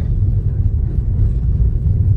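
Steady low rumble of a car driving along a road, its engine and tyre noise heard from inside the cabin.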